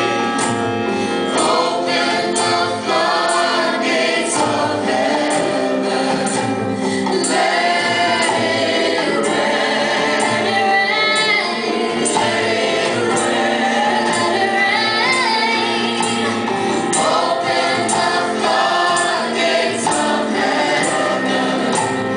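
A live gospel worship band playing, with a group of singers, women's voices leading, singing together over keyboard, electric guitars and drums.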